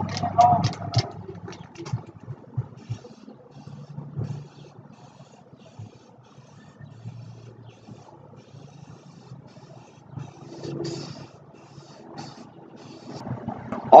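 A can of aerosol spray primer is shaken with a clicking rattle from its mixing ball, then sprayed in short hissing bursts onto a wooden board. It is shaken again near the end.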